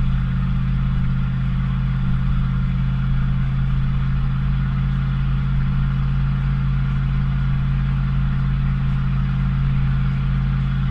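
Ford 460 big-block V8 (7.5 litre) running steadily under a towing load of about 9,000 lb, heard from inside the truck's cab as an even low hum with no change in pitch.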